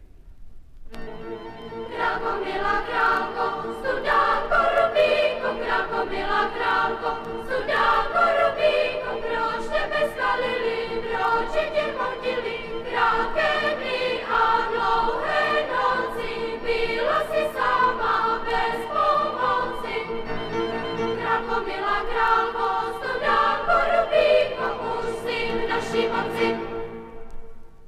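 Children's choir singing a Czech cantata with string and piano accompaniment. It comes in about a second in, over a note held steadily in the strings beneath the voices.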